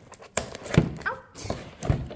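Cardboard box being pried open by hand: about four dull knocks and scuffs of the cardboard lid and flaps.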